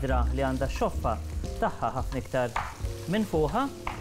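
Food sizzling in hot frying pans, under background music.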